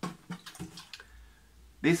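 Handling noise as a plastic watering can is picked up: a few soft clicks and knocks in the first half-second or so, then a quiet room with a low hum.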